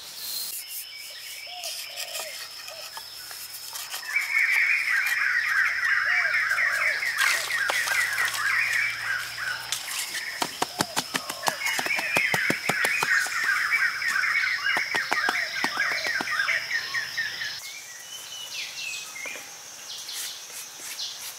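Birds chirping in rapid repeated notes, in two long spells, over a steady high whine, with a run of quick sharp clicks between the spells, about ten to thirteen seconds in.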